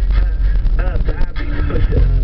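Car's engine and road noise heard inside the cabin as a low, steady rumble in a break in the music, with a voice briefly heard from about a second in.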